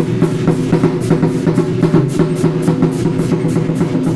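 Taiwanese war drums (large barrel drums) beaten together by a drum troupe in a loud, driving rhythm of about four strokes a second.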